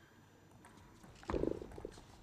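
Table tennis rally: a few faint clicks of the ball, then a sudden loud, low burst a little over a second in that lasts about half a second.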